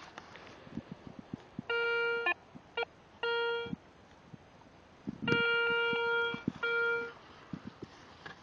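Metal detector giving a steady beep tone in five separate signals of varying length, from short blips to about a second, as its search coil is swept over a dug-out clod of soil: it is signalling a metal target inside the clod. Small taps and rustles of the coil and grass between the signals.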